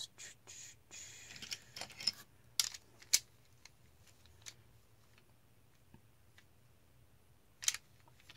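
Art supplies being handled and sorted through: light rustling, then a few sharp clicks and taps. The loudest click comes about three seconds in, and there is a double click near the end.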